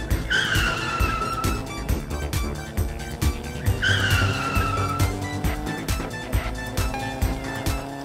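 Cartoon car sound effects over background music with a steady beat: two tire squeals, each about a second long and falling slightly in pitch, one near the start and one about four seconds in, with an engine tone rising slowly in pitch.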